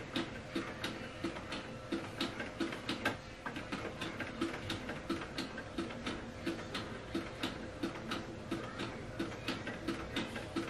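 Epson EcoTank inkjet printer printing a sheet of sublimation paper: an even rhythm of soft clicks, about three a second, over a faint steady hum.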